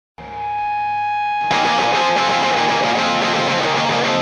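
Intro of a punk rock song on electric guitar: a held, ringing guitar chord swells in. A louder, fuller guitar part starts about a second and a half in, still without drums or bass.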